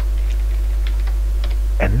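Computer keyboard being typed: a handful of light, scattered keystrokes over a steady low electrical hum.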